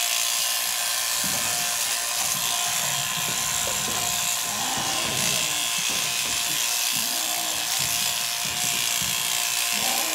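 Electric sheep-shearing handpiece running steadily as its cutter combs through fleece, a continuous high buzz.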